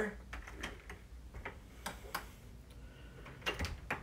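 Faint scattered clicks and small knocks of a house door's lock and handle being checked, with a few sharper clicks around the middle and near the end.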